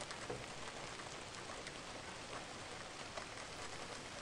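Steady rain falling, with scattered individual drops ticking close by.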